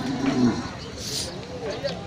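Cattle lowing: one long, low moo that ends about half a second in, followed by a short hiss about a second in.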